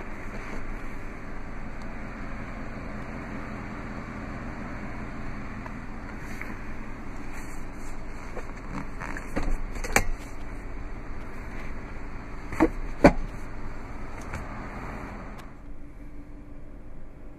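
Jeep Grand Cherokee 60-40 split rear seat being folded forward by hand: scattered clicks and clunks from the seat latches and cushion over a steady background hiss. The loudest knocks come about ten seconds in and as a close pair a little after twelve seconds.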